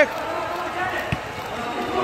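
A football kicked on an artificial-turf pitch: one dull thud about a second in, over low background noise.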